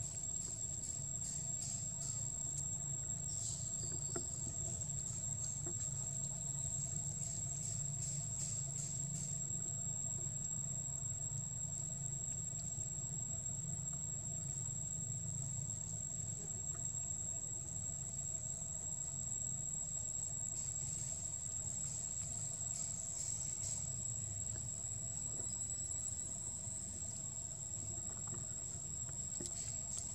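Steady, high-pitched drone of forest insects, pulsing rapidly during the first third and again about two-thirds of the way through, over a low steady rumble.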